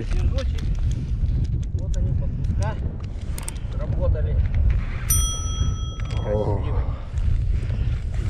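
Wind buffeting the microphone as a steady low rumble, with a man's brief muttered words and a few sharp handling clicks. About five seconds in, a bright ding rings for under a second: the bell sound effect of a subscribe-button animation.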